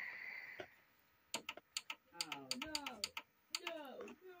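A run of about a dozen sharp button clicks, a few a second, starting about a second in, as the TV's volume is changed, with a voice sliding up and down in pitch between the clicks.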